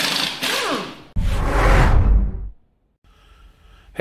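Two intro whoosh sound effects. The first carries a falling pitch sweep; the second is deeper and fades out about two and a half seconds in. A brief silence follows, then faint room tone.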